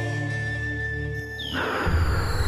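Intro theme music: a held chord with a low drone, broken about three quarters of the way through by a sudden noisy hit that sets off sweeping tones and a heavy bass.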